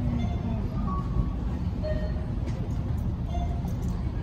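A steady low rumble, with a few faint short tones over it.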